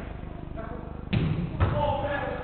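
Two thuds from a football being struck, about half a second apart, with players calling out on the pitch.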